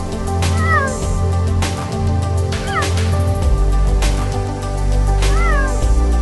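Background music with a steady beat, over which a cheetah gives three short chirping calls that each rise and fall in pitch, about two seconds apart.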